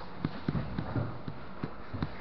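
Irregular dull thumps of bare feet, hands and bodies landing and shifting on foam mats during a grappling roll, several a second and uneven, picked up close through a camera resting on the mat.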